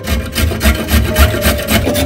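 A carrot being grated on a stainless-steel box grater: quick back-and-forth rasping strokes, about five a second, starting suddenly and keeping an even rhythm.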